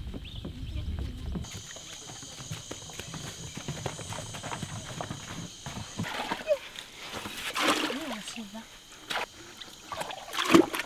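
Water being scooped with a gourd ladle from a shallow hole dug in the ground, with sloshing and splashing in the second half. A steady high-pitched hum runs behind it from about a second and a half in.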